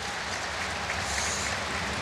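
A large stadium crowd applauding in a steady ovation.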